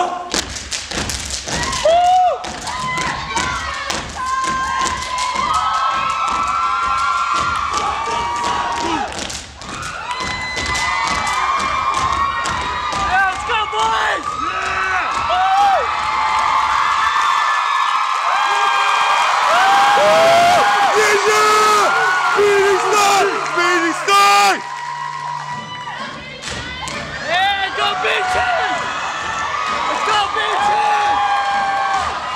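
Step dance: feet stomping on a wooden stage with hand claps and body slaps, dense through the first half and sparser later, while the audience cheers, whoops and shouts.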